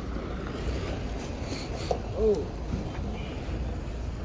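Steady low rumble of wind buffeting the microphone at an open-air car market, with a brief faint voice in the background about two seconds in.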